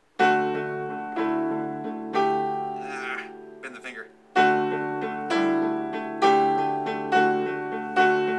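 Upright piano playing a slow, simple D major progression: the left hand alternates root and fifth while the right-hand chords start on the third, with chords struck roughly once a second. There is a brief lull near the middle before the steady pattern resumes.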